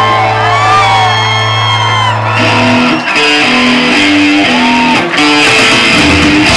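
Live rock band with electric guitars played loud through Marshall amplifiers: a lead guitar bends notes over a long held low note, which drops out about three seconds in as a stepping riff of short repeated notes takes over.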